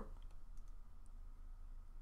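Faint room tone with a low hum and a few faint, short clicks.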